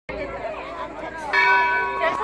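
A metal temple bell struck once about a second in, ringing on with several steady tones over people's chattering voices.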